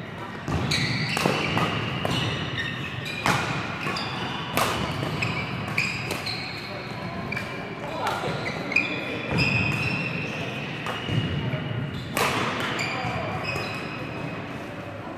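Badminton doubles rally: rackets hitting the shuttlecock again and again, with sharp cracks from the hardest shots, and shoes squeaking on the court floor, echoing in a large sports hall.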